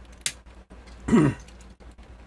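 A man clears his throat once, about a second in, with a short falling voiced rasp. A sharp click just before it and faint ticks around it come from the plastic parts of a Transformers action figure being handled and rotated.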